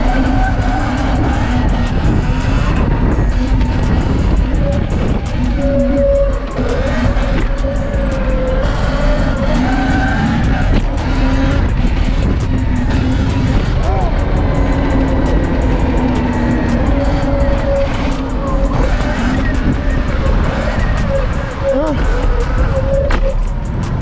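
Wind rushing over the microphone of a Sur-Ron electric dirt bike riding along a street, with a whine from its electric motor that rises and falls as the speed changes.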